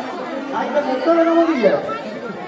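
Crowd chatter: several women talking over one another at close range.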